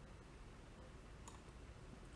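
Near silence: faint room tone, with a single faint computer mouse click about a second in.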